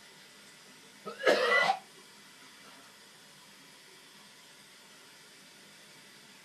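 A person gagging once while brushing their teeth: a single short, loud, cough-like retch about a second in.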